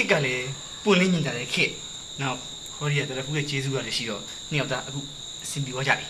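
A man and a woman talking in Burmese, in short lines with brief pauses. Behind them runs a steady high-pitched whine at two pitches.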